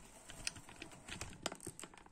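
Faint, irregular light clicks and taps of a camera being handled and repositioned.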